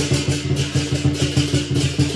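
Chinese lion dance percussion: a large drum struck in a fast, steady beat of about five strokes a second, with crashing cymbals and a ringing gong.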